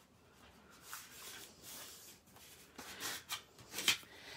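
Hands rubbing and pressing folded cardstock flat to crease the fold, a faint rustling and scraping of paper, with a few short taps near the end.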